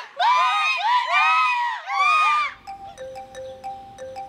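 Several people shouting and whooping in cheers for about two and a half seconds, high rising-and-falling cries. The cheering breaks off and recorded folk music begins, quieter, with a steady run of evenly repeated notes.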